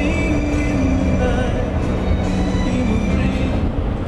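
Music playing from a car radio, with long held notes, over the steady low road rumble of a moving car heard inside the cabin.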